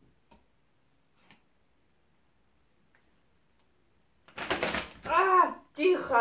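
A high-pitched woman's voice makes short wordless exclamations near the end: a breathy burst, then two rising-and-falling calls. Before that there are only a couple of faint ticks.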